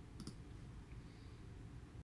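Two faint clicks in quick succession just after the start, then only faint low room noise.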